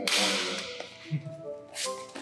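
A sharp whoosh sound effect that fades over about half a second, over background music, with a second, shorter swish near the end.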